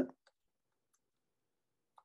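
A few faint, isolated computer keyboard key clicks as characters are deleted, the clearest one near the end.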